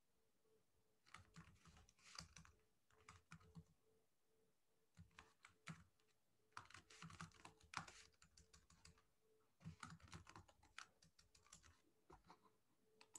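Faint typing on a computer keyboard: several short runs of keystrokes with pauses between them.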